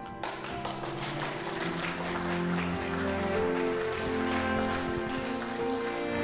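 Background score music with several sustained, held notes, over a dense, light patter of taps.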